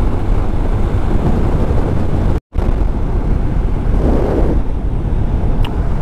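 Motorcycle riding at speed at night: a steady rush of wind on the microphone over engine and road noise. The sound cuts out completely for a moment about two and a half seconds in.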